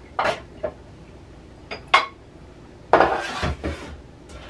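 Dishes and cutlery clinking and clattering during hand dish-washing: a few sharp clinks in the first two seconds, then a longer clatter about three seconds in.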